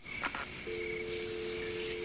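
A telephone line clicks, then a steady dial tone comes on about two-thirds of a second in and holds: the anonymous caller has hung up.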